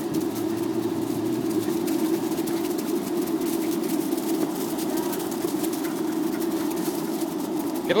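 Skateboard wheels rolling fast over a path, a steady hum with faint ticks, unchanging throughout.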